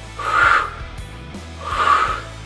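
A man breathing out hard twice while exercising, each breath about half a second long and the two about a second and a half apart, over background music.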